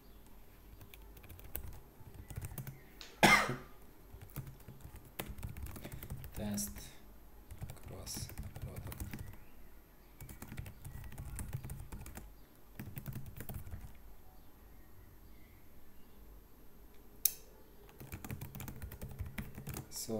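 Computer keyboard typing in irregular bursts of keystrokes, with short pauses between them. One much louder short sound about three seconds in, and a single sharp click near the end.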